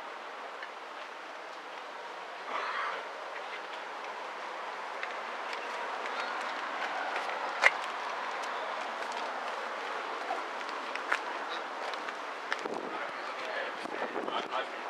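Steady outdoor background noise with faint voices in it, broken by scattered sharp clicks. The loudest click comes a little under 8 s in.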